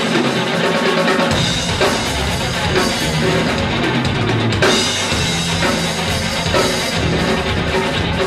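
Live rock band playing an instrumental break with the drum kit to the fore: bass drum and snare over held notes from the other instruments. The low end comes in about a second in.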